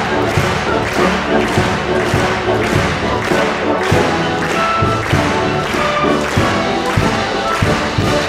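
Symphony orchestra playing a lively piece, with a strong thump on every beat, a little under two a second.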